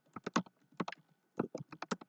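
Typing on a computer keyboard: about a dozen quick key clicks in irregular bunches as one word is typed.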